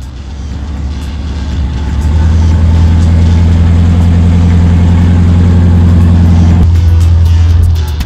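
A Range Rover's engine revving up and then held at high, steady revs under load as the truck churns through a dirt rut, dropping off abruptly near the end.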